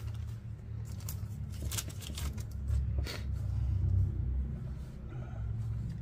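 A few short crinkles and rustles from a small plastic bag of replacement capacitors being handled, over a steady low rumble.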